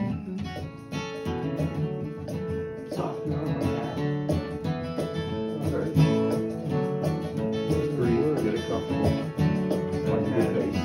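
Acoustic guitar played in an even rhythm, strummed chords mixed with picked melody notes.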